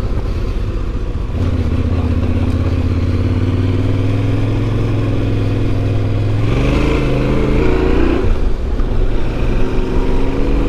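Yamaha Ténéré 700's parallel-twin engine under way on a dirt track. Its note climbs slowly, rises sharply as the throttle opens about two-thirds of the way in, drops back, and picks up again near the end.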